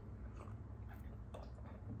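Faint sips and swallows from a glass of energy drink, with a few soft mouth clicks.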